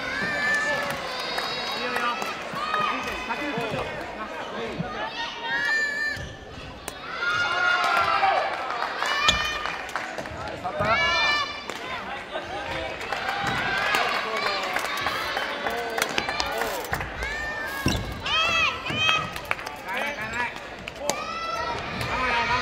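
Busy sports-hall noise around a badminton court: a constant mix of voices and calls from players and onlookers, with sharp racket-on-shuttlecock hits, and shoes squeaking on the wooden floor.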